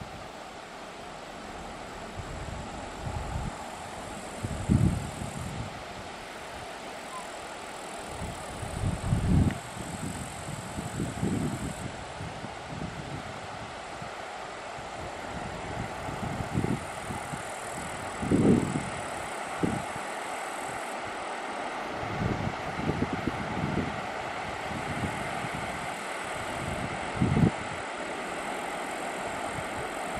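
EP2D electric multiple unit approaching from a distance: a steady running noise that grows slowly louder. Irregular low gusts of wind buffet the microphone and are the loudest moments.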